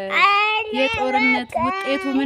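A young child singing in a high voice, a short sing-song run of held notes that rise and fall.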